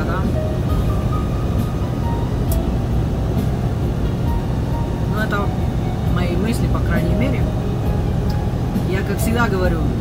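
Steady engine and road rumble inside a semi-truck cab at highway speed, with music and faint voices playing in the background.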